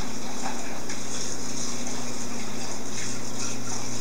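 Steady background hiss with a low, even hum underneath, and no distinct event standing out.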